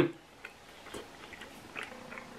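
A quiet pause with a few faint, short clicks, about three in two seconds.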